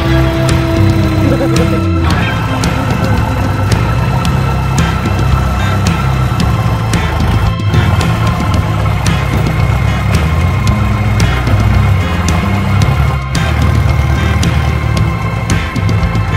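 Background music with a steady beat and a bass line stepping between notes.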